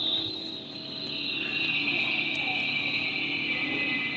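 Ambient background music in a pause of the narration: several sustained high tones held together, slowly sliding down in pitch.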